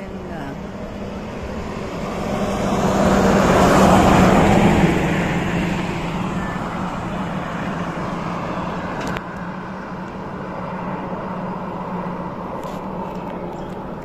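A road vehicle passing: its engine and tyre noise builds, is loudest about four seconds in, then fades. A steady low hum runs underneath throughout.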